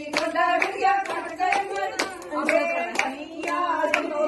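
A group of women singing together while clapping their hands in time, about two claps a second.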